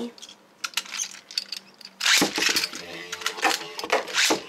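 Beyblade spinning tops launched from their ripcord launchers into a plastic stadium. After a few light clicks, a sudden loud rip and clatter comes about halfway through as the metal tops land and skitter spinning across the plastic bowl.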